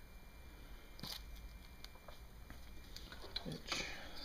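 Faint handling noise: light clicks and rustles as small engine parts and the camera are handled, with a sharper click about a second in and another short noise near the end.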